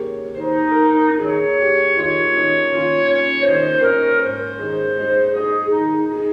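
Slow instrumental music played on an electronic keyboard: a melody of held, reedy, clarinet-like notes over sustained chords.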